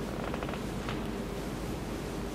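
Steady hiss and low hum of an open microphone on a courtroom sound system, with a faint voice briefly in the background about half a second in.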